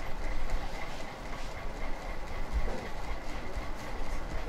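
Rustling and rubbing handling noise from hands working a pink sugar-paste petal close to the microphone, uneven and rumbly with small clicks. A faint steady high tone runs underneath.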